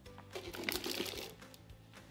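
Moist potting soil poured into a cut-open plastic soda bottle: a rustling, crinkling burst of about a second, starting about half a second in, over soft background music.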